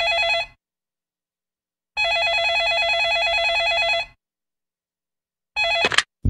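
Electronic telephone ringing, a warbling trilled ring. One ring ends just after the start, a full two-second ring comes about two seconds in, and another begins near the end, with silence between the rings.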